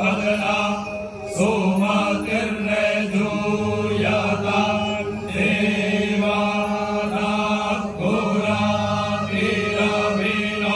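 Male Brahmin priests chanting Vedic mantras in unison through microphones, on long held syllables at a steady pitch. Brief breaks between phrases come about a second in, near five seconds and near eight seconds.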